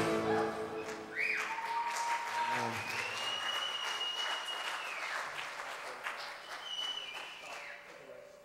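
Audience applause and cheering as a live band's song ends, with a few long, high whoops or whistles over the clapping. The applause dies away near the end.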